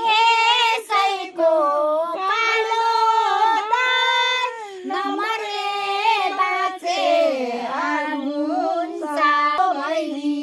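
A young female voice singing unaccompanied, a high melody in short phrases with long held notes that waver.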